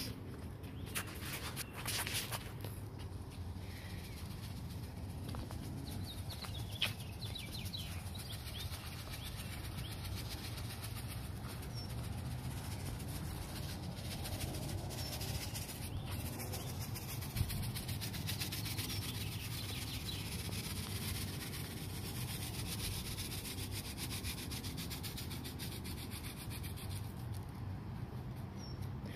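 A few footsteps on wooden deck steps in the first couple of seconds, then a steady low outdoor background noise with light rubbing.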